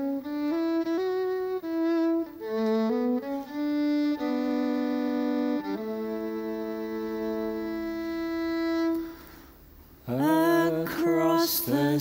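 Slow fiddle melody played as a song introduction: a few stepwise notes, then one long held note. About ten seconds in, a man and a woman begin singing together.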